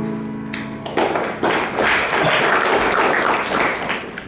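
The last piano chord of the accompaniment dies away, then audience applause breaks out about a second in and fades near the end.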